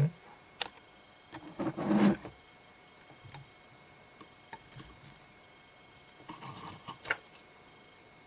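Sporadic small clicks and rustles of hands and tools working a fly in a fly-tying vise, with a short muffled burst about two seconds in and a cluster of clicks near the end.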